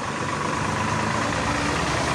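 A steady low mechanical hum with a faint, steady higher tone over it.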